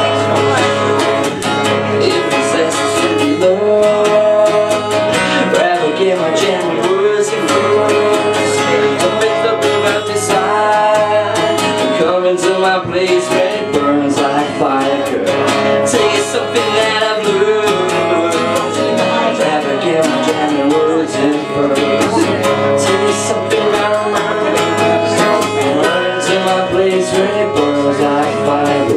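Acoustic guitar playing a song, strummed steadily.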